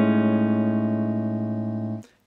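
A clean electric guitar (Fender Stratocaster) chord, an A major 7 sharp 11 voicing that brings out the Lydian mode, ringing on with a slow fade after a single strum and stopping abruptly at the end.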